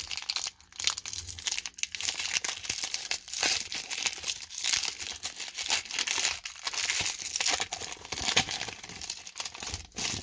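The foil-lined wrapper of a 1994 Topps baseball card pack being torn open and crumpled by hand: continuous crinkling with irregular sharp crackles and tearing.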